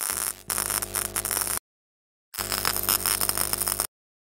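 Static-noise glitch sound effect in two bursts of about a second and a half each, cut off sharply with a short silence between them, a low hum running under the hiss.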